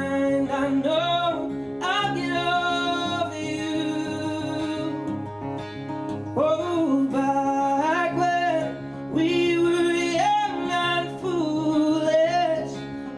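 Male singer singing with long held notes over his own acoustic guitar accompaniment, performed live.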